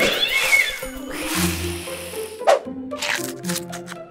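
Cartoon cat sound effect: a yowl that falls in pitch, followed by a burst of noise and a sharp click, over light background music.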